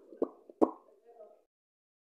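Three quick, sharp lip smacks or kissing pops from pursed lips in the first second, followed by a faint short murmur.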